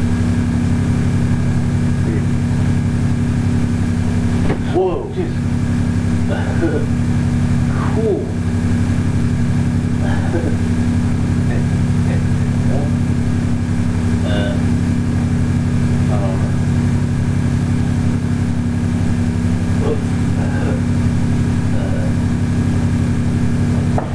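A steady low hum runs throughout, with faint, indistinct voices now and then.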